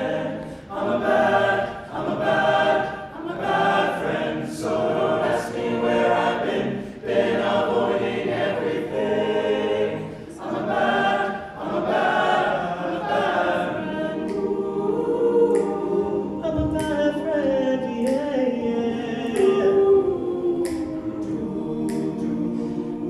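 All-male a cappella group singing sustained, pulsing chords, with vocal percussion striking a steady beat. In the second half a solo voice sings a line that slides up and down above the group.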